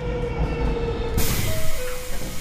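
Sound effect of a high-speed bullet train rushing past: a low rumble that swells into a loud whoosh about a second in.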